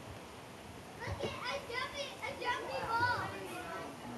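Children's voices chattering and calling, starting about a second in, over a steady background hiss.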